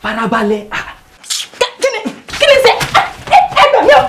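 A man's voice speaking, then, in the second half, loud harsh cries and a woman's cries for help as he grabs her in a struggle.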